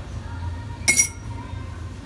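Metal serving tongs clinking, two quick clicks close together about a second in with a short metallic ring.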